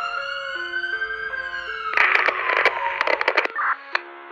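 Electronic logo-intro music: a long gliding, siren-like synth tone that rises and then slowly falls over a stepped synth melody. About two seconds in, a quick run of stuttering glitch bursts takes over, and the sting ends in a short hit.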